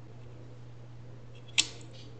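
A DDR3 SO-DIMM memory module pressed down into a laptop's memory slot, snapping into the retaining clips with one sharp click about one and a half seconds in, over a low steady hum.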